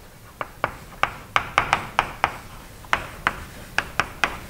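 Chalk on a chalkboard as a word is written: a string of about a dozen sharp, irregular taps, with faint scraping between strokes.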